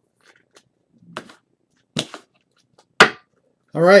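Sharp knocks of cards or boxes being handled on a tabletop: a few faint ticks, then three clear knocks about a second apart, the last the loudest. A man's voice begins just before the end.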